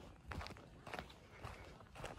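Faint footsteps crunching on a dry, dusty dirt trail: a few separate steps at a walking pace.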